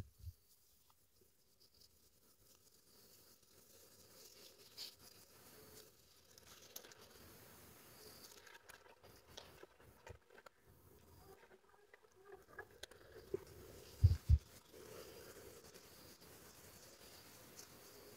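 Faint rustling and small clicks of a crochet hook drawing cotton yarn through stitches, with two soft low thumps about fourteen seconds in.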